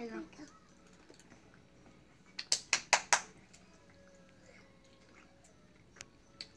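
A quick run of about five sharp clicks or taps, roughly five a second, a little over two seconds in. They are the loudest thing in an otherwise quiet stretch.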